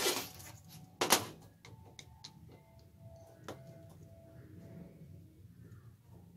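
Two sharp knocks, near the start and about a second in, then a few light clicks, from the metal parts of a claw-machine claw and a screwdriver being handled while its screws are taken out.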